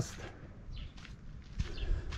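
Quiet outdoor lull with a few faint, soft footsteps as the person holding the camera walks along the combine.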